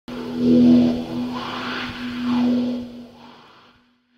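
Logo-intro sound effect: whooshing swells over a steady low hum, one about half a second in and another about two and a half seconds in, then fading out near the end.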